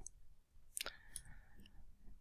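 Faint computer mouse clicks, a couple of short ticks about a second in, over quiet room tone.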